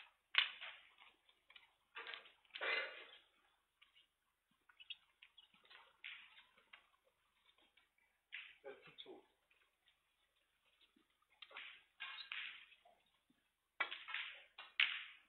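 Quiet, scattered sounds of snooker balls being handled and set back on the table by the referee, light knocks and clicks among faint voices.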